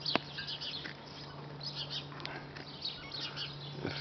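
Small birds chirping and tweeting, with a steady low hum underneath. A sharp click comes just at the start.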